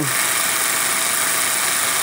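Homemade Van de Graaff generator running, its motor-driven belt making a steady, even whirring noise.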